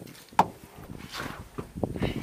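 A sharp knock about half a second in, then soft bumps and rustling, with another short knock near the end: a person climbing into the driver's seat of a small pickup's cab with the door open.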